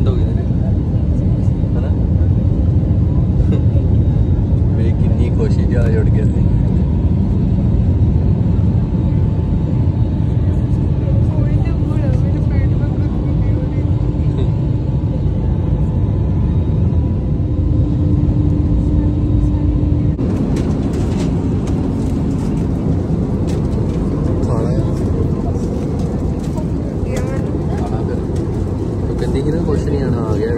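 Jet airliner cabin noise: engines and airflow making a loud, steady low rumble, with a faint hum on top in the middle and a shift in the noise about twenty seconds in.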